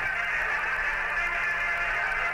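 Music from the soundtrack of an Apollo liftoff video playing on the computer, steady and muffled.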